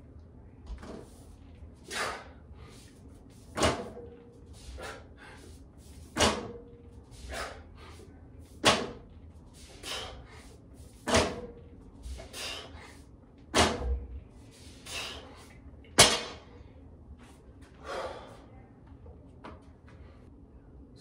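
A set of barbell deadlifts with a 255-pound bar on bumper plates: a regular run of about seven reps, one every two and a half seconds or so, each marked by a sharp, forceful breath and the plates knocking down onto the floor mat, with softer breaths between.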